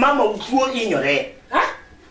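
Speech: a man's voice talking in Luo, ending with a short sharp exclamation about a second and a half in.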